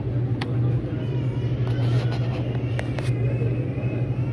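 Steady low hum of supermarket background noise, with faint voices wavering above it and a few light clicks.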